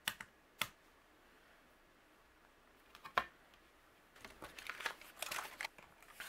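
A few sharp clicks of a clear acrylic stamping positioner and its stamp being handled, then soft rustling of cardstock being slid and set down on the mat near the end.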